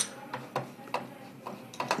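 A computer mouse clicked about eight times at uneven intervals, with the first click the loudest.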